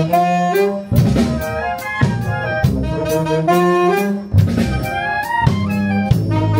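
Concert wind band playing a tune: saxophones, flutes and clarinets carry the melody over a sousaphone bass line, with drum hits roughly once a second.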